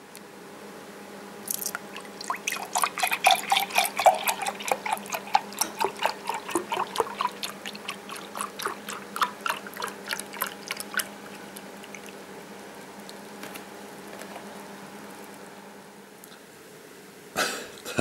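Orange juice being poured into a glass: a quick, irregular run of splashing that starts about a second and a half in and stops about eleven seconds in.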